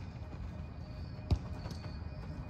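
A single sharp thump about a second and a half in, a soccer ball being struck, over a steady low background rumble.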